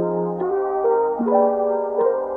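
Background music: sustained brass-like notes held in chords, the chord changing about every second.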